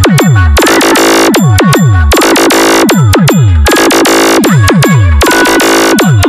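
Loud electronic DJ competition remix. Deep bass hits slide down in pitch over and over, trading with bursts of noise about once a second.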